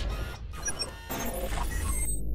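Sound effects for an animated logo intro: swelling whooshes and scattered glitchy electronic blips and crackles over a steady low bass hum.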